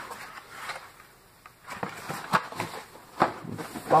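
Cardboard boxes being handled: a few short knocks and scrapes as a small boxed item is lifted out of a cardboard carton.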